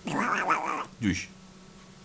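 A man's drawn-out vocal exclamation lasting most of a second, followed by a shorter vocal sound about a second in.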